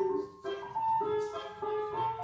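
Tango vals (waltz) music played over loudspeakers in a dance studio: a melody of held notes changing about every half second.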